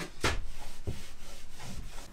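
A whiteboard being wiped by hand, several rubbing strokes across its surface.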